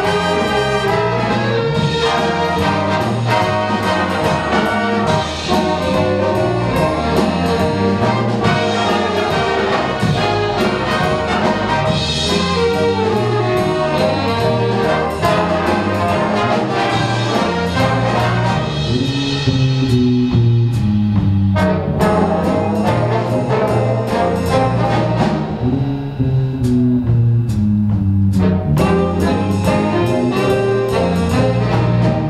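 Live big band jazz: a full ensemble of saxophones, trombones and trumpets with piano, guitar, bass and drums playing together, the brass prominent.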